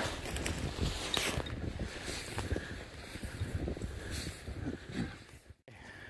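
Wind rumbling on a phone microphone, with faint scuffs and crunches of footsteps in snow. The sound cuts out abruptly near the end.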